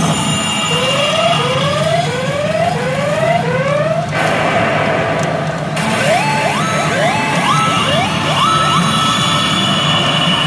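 Pachinko machine (P牙狼 月虹ノ旅人) sounding a siren-like effect: five short rising electronic whoops in about three seconds, then, after a brief lull, a second run of rising, stepped sweeps. Underneath is the steady din of a busy pachinko parlour. It is the machine's jackpot-anticipation effect around its GARO hold icon.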